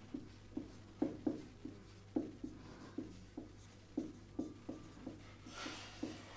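Marker pen writing on a whiteboard: a faint string of short, quick strokes, about three a second, as a word is written out.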